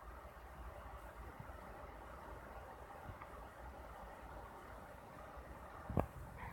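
Faint steady hiss of a MacBook's cooling fan running flat out at about 7,000 RPM, a sign that the CPU is running hot at around 210°F.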